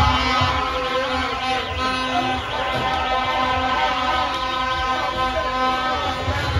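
Several car horns sounding together, held for long stretches, in a packed street of cheering fans, with a fast warbling high tone over them that stops about two-thirds of the way in.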